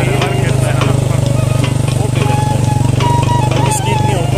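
Background song: a wavering melodic line over a steady, loud low drone.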